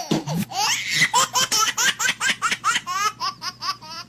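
High-pitched laughter in a quick run of short rising laughs, about five or six a second.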